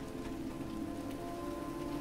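Steady rain, an even hiss, with soft background music holding sustained notes underneath.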